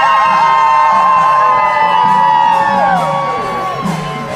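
Kirtan chanting by a crowd of devotees: many voices hold one long note together, which slides down and trails off near the end, over a steady drum beat.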